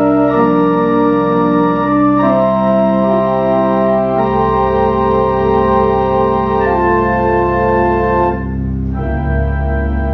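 Burton K. Tidwell's 40-rank pipe organ playing slow, sustained chords that change every second or two. A deep pedal bass note comes in about four seconds in, and the sound dips briefly before a new chord near the end.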